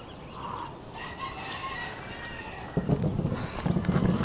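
A drawn-out bird call lasting about a second, of the kind a rooster's crow makes. From about three seconds in, a loud low rumble with a few sharp knocks takes over.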